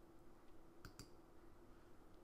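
Two faint clicks of a computer mouse button close together about a second in, over near-silent room tone.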